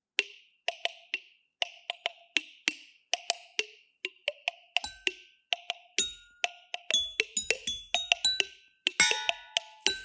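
Improvised percussion on kitchen objects: a steady beat of sharp clicks, about three a second. From about five seconds in, ringing tones join it, from drinking glasses being struck.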